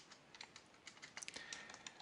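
Faint typing on a computer keyboard: a run of irregular keystroke clicks.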